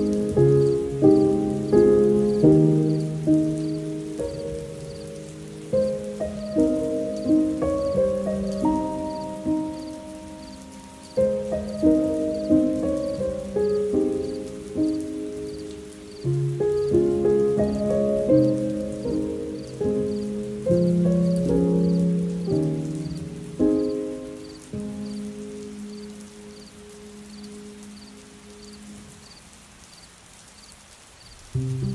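Slow, soft solo piano music, single notes and chords struck and left to ring away, over a faint steady hiss. The playing thins out and fades in the last few seconds.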